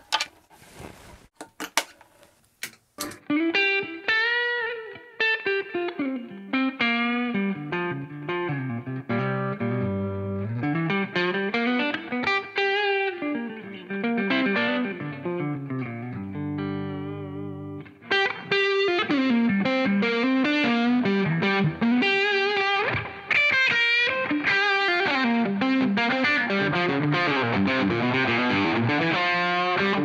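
Semi-hollow electric guitar with a Bigsby vibrato, played through an amplifier: melodic lead lines and chords, with a held chord wavering in pitch around the middle. A few sharp clicks come first, in the opening three seconds.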